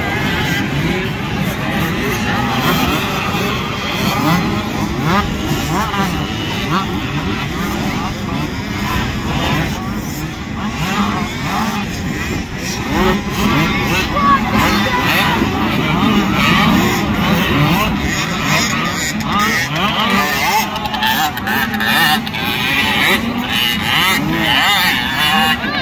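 A pack of small youth motocross bikes racing, several engines revving at once with their notes rising and falling and overlapping.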